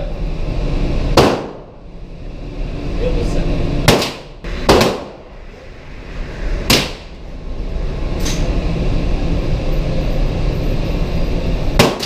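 About six handgun shots fired at irregular intervals, each sharp crack followed by a short echo off the indoor range's walls, over a steady low rumble.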